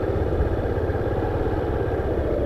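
Honda motorcycle engine running steadily at low revs while the bike rolls slowly, heard from the rider's seat.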